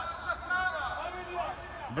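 Voices shouting and calling out across an outdoor football pitch during play, quieter than the nearby shouting on either side.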